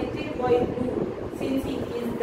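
A woman's voice reading aloud from a textbook, over a low background rumble.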